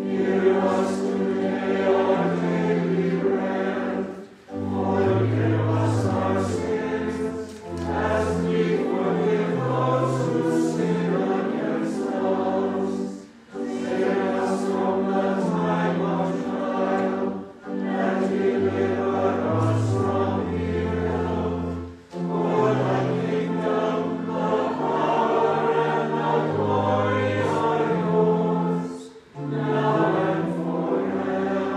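Choir singing a liturgical piece in phrases of a few seconds each, with a brief pause for breath between phrases and low bass notes under the melody.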